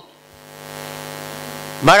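Steady low electrical hum with many overtones, fading up over the first half-second and then holding steady. A man's voice comes in near the end.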